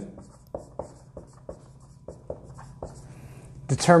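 Dry-erase marker writing on a whiteboard: a quick series of short strokes, several a second, as a word is written out. Speech begins near the end.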